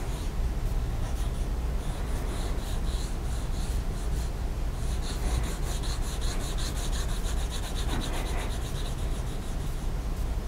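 Pencil scratching back and forth on drawing paper, quickly shading in an area with even strokes, several a second. A low steady hum runs underneath.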